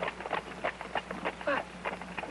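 Horse's hooves clip-clopping at an even trot, about six clops a second, as a horse draws a carriage; a short spoken word comes near the end.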